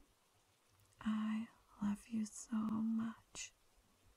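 A woman's soft, hushed voice making a few short murmured sounds between about one and three and a half seconds in, with a sharp mouth click near the end.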